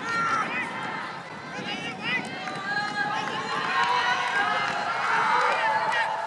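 Several people shouting and calling out in raised, high voices, urging on runners in a race, over the steady background noise of an open stadium.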